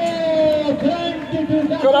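Male commentator's voice stretching out one long call, then going on speaking.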